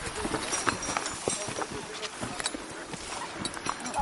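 Irregular footsteps crunching and scuffing on a stony, grassy slope, with brushing through tall grass, as people walk uphill.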